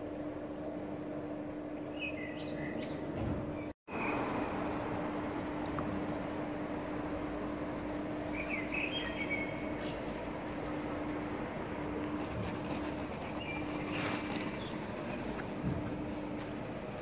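City street ambience: a steady hum of traffic with a constant low drone under it, and a few short bird chirps now and then. The sound cuts out completely for a split second about four seconds in.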